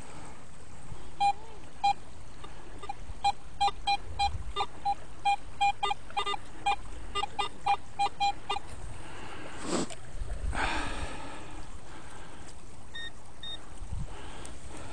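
Metal detector beeping: a run of about twenty short tones, mostly at one mid pitch with a few slightly higher, over the first eight seconds or so. Then comes a brief rustling noise, and two short higher beeps near the end.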